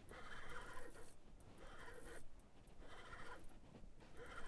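Faint handling noise from an ice-fishing rod and reel being worked while a fish is brought up, coming and going in soft patches.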